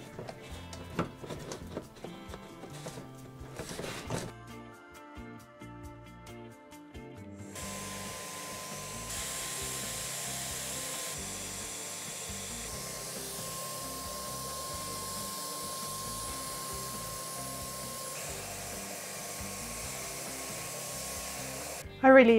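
Clicks of a Wagner FLEXiO 5000 HVLP paint sprayer being put together, then, about seven seconds in, its turbine starts and runs steadily with a constant rushing hiss and a thin high whine as it sprays water-based primer.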